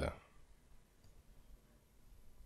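A voice trails off at the very start, then near silence: faint room tone with a faint tick about a second in.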